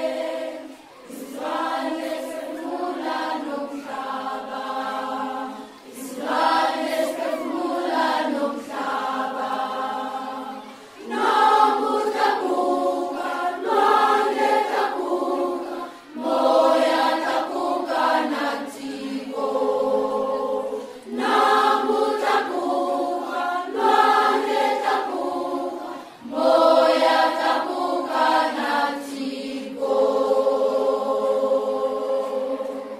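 Music with choral singing: voices holding long notes in phrases of about five seconds, each followed by a short breath-like pause.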